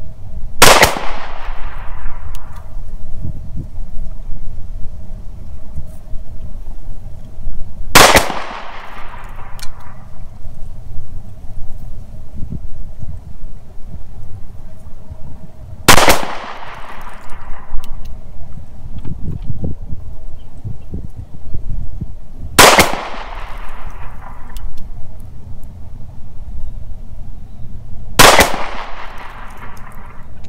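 FN 509 9mm semi-automatic pistol firing 115-grain full-metal-jacket rounds in slow, deliberate single shots: five shots about six to eight seconds apart. Each shot is a sharp crack followed by an echo that dies away over about two seconds.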